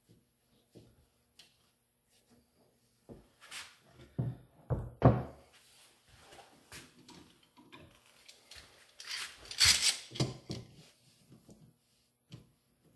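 Metal bar clamps and a wooden shovel handle being handled on a wooden workbench while the epoxy-filled handle is clamped up: light clicks, then a few loud knocks and thuds about four to five seconds in, and a short burst of scraping noise about nine to ten seconds in.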